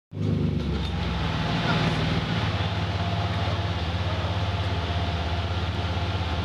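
Alfa Romeo 164 Super's 3.0 24-valve V6 running steadily on a chassis dyno at low, even revs, without a rev sweep; its note shifts slightly a little over two seconds in.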